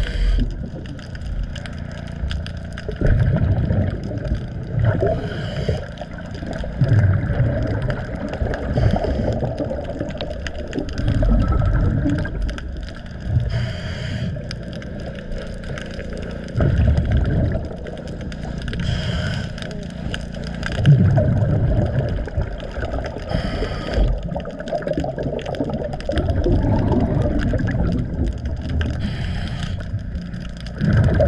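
Underwater sound of a diver breathing through a regulator: a short hiss of inhalation every several seconds, each followed by the rumble of exhaled bubbles, over a steady watery background.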